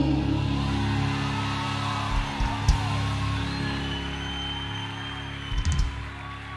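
Live worship band playing softly between sung lines: sustained keyboard chords held steady, with a few low drum thumps, slowly fading.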